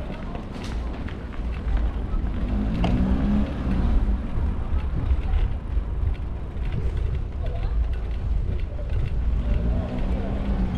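Steady low rumble of wind and road noise on a camera riding a bicycle over block paving, with scattered light rattles. An engine hum from nearby motor traffic rises about three seconds in and again near the end.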